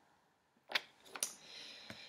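Construction paper being handled and set down on a table: a few light clicks and rustles, starting just under a second in after a moment of near silence.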